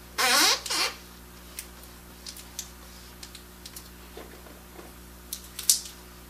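Hands rubbing an adhesive transfer strip into a rubber tire's sidewall: a loud squeak falling in pitch, in two parts, right at the start, then faint scattered ticks and rubs, and a short hiss of rubbing near the end.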